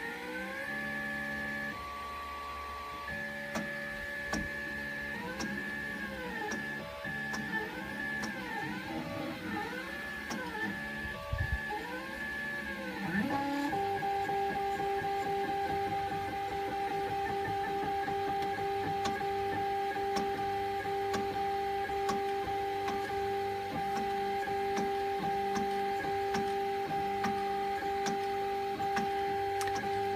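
Da Vinci Duo 3D printer's stepper motors whining in repeated rising-and-falling pitch arcs as the print head moves, then settling about halfway through into a steady two-note hum with fast ticking under it. The ticking is a skipping noise, the sign that the extruder nozzle sits too close to the bed.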